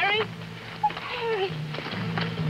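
A person's wordless, wavering cry right at the start, then a shorter falling one a little past the middle, over a low steady hum.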